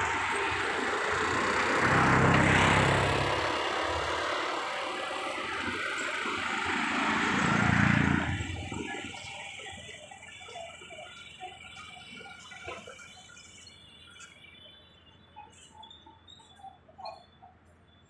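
Road traffic: two vehicles pass one after another, each swelling and fading, in the first half. It then drops to a quieter outdoor background with faint scattered short sounds near the end.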